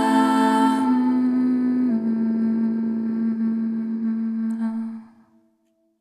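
The song's closing held notes: a sustained chord that steps down in pitch twice, then dies away about five seconds in.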